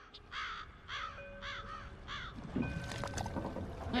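Cartoon seagulls squawking in a quick run of about five short calls, followed by faint steady tones underneath.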